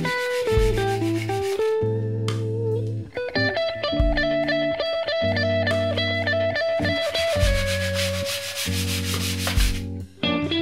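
Instrumental background music led by a clean electric guitar, the Harley Benton ST-style kit guitar, playing held melody notes over a bass line. Low beats fall every second or two.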